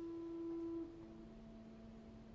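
Quiet orchestral accompaniment in an opera: a soft held note fades out just under a second in, and a lower, fainter held note follows.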